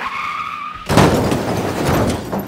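Sound effect of a car's tyres squealing, then a sudden loud skid about a second in as the car brakes hard to a stop.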